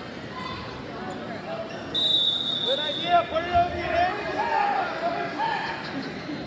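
A referee's whistle blows one steady high blast about two seconds in, lasting about a second, followed by spectators and coaches yelling and a couple of dull thuds of wrestlers hitting the mat, all echoing in a gym.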